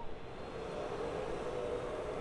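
Steady low background noise, a faint hum with a held tone, with no speech.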